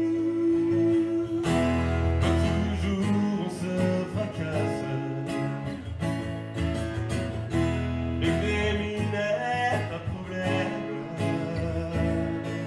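Acoustic guitar strummed and picked in a live performance, with a man's voice singing along.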